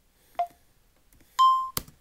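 Two short clicks, each with a brief ringing tone, then a short electronic beep about one and a half seconds in, followed at once by a sharp click.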